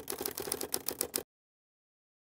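Typewriter key-click sound effect: a quick run of sharp clicks that cuts off suddenly about a second in.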